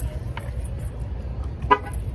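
A short car-horn toot about three-quarters of the way through, over a low steady rumble.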